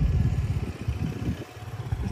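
Wind buffeting the microphone: an uneven low rumble that gusts and briefly drops away about one and a half seconds in.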